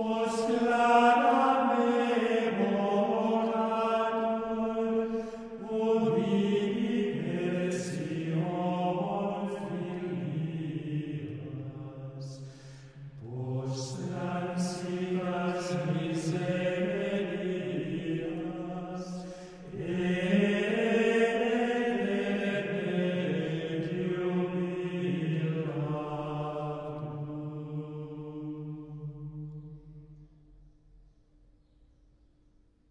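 Male voices singing medieval Latin plainchant a cappella as one line, in long phrases with brief breaks for breath about 13 and 20 seconds in; the last note dies away near the end.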